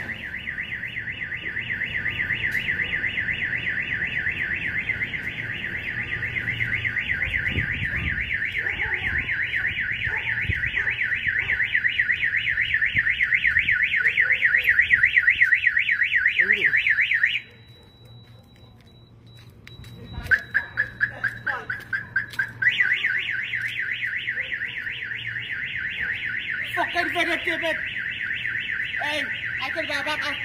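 A car alarm siren sounding a fast, steady warble, cutting off suddenly about seventeen seconds in. After a pause of about three seconds there is a run of sharp clicks, and the warble starts again.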